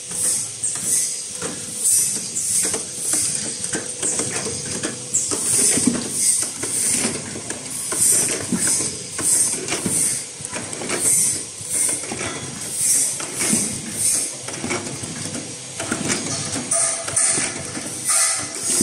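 Automatic bottle filling and capping line running, with a hiss repeating about twice a second over a steady hum and irregular clicking and clatter from the machinery.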